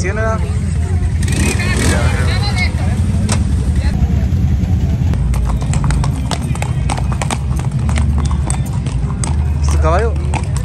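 Horses' shod hooves clip-clopping on a concrete street as riders walk past, sharp hoof strikes coming thick from about halfway through. Voices are heard early on, over a steady low rumble.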